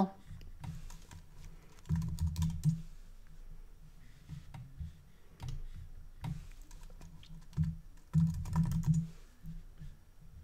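Typing on a computer keyboard close to the microphone: two short runs of keystrokes, about two seconds in and again near the end, with scattered single clicks between.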